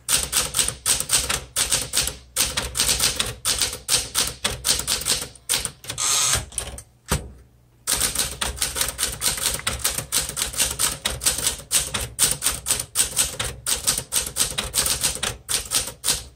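A 1969 Smith Corona Classic 12 manual typewriter being typed on at a brisk pace: a rapid run of key strikes clacking one after another, with a brief pause about seven seconds in before the typing picks up again.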